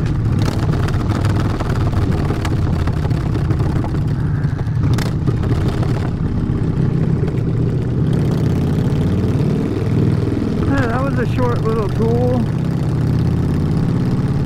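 Harley-Davidson V-twin motorcycle engine running while riding. Its note shifts in pitch with the throttle a little over halfway through.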